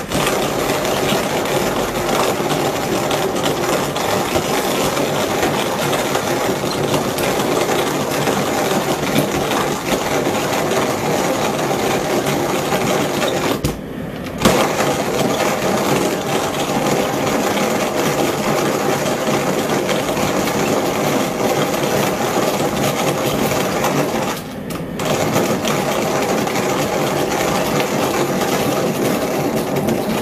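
Hand-cranked coffee grinder grinding whole coffee beans: a steady gritty crunching as the crank turns, broken by two brief pauses, one about halfway through and one some ten seconds later.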